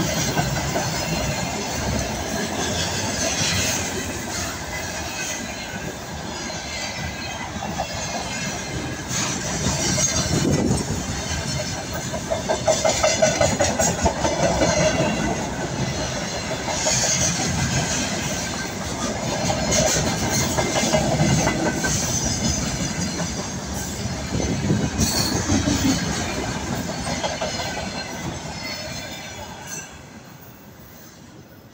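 A freight container train rolling past: steady wheel-on-rail rumble and clatter that swells and eases as the wagons go by, with a faint high metallic whine from the wheels. The sound fades away near the end as the train passes.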